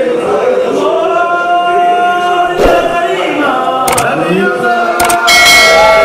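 A group of men chanting together in long, held lines, a devotional Mawlid chant in praise of the Prophet. A few sharp knocks cut through, and the chant grows louder and brighter near the end.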